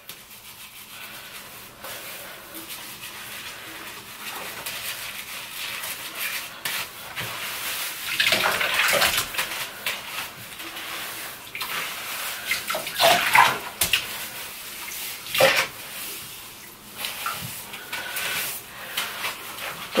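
Hands working shampoo through a wet synthetic wig over a bathtub of soapy water: wet squelching and water splashing and dripping into the tub. Louder wet splashes come about eight, thirteen and fifteen seconds in.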